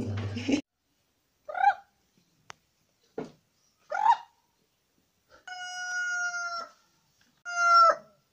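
Chickens calling: a few short squawks, then a rooster crowing, one long, steady-pitched crow and a shorter one near the end.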